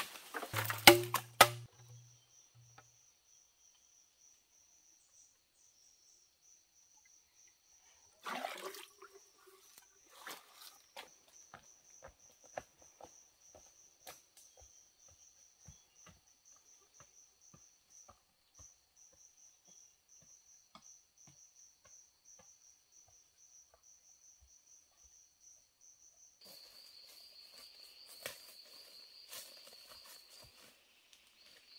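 Insects trill in a high, steady, finely pulsing tone, and a second, louder insect call takes over near the end. A few sharp chopping strikes on wood fall in the first second or so. Scattered light knocks follow, with a louder knock about eight seconds in.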